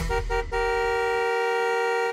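Car horn: a brief toot, then a long steady honk with two horn tones held together, cut off suddenly.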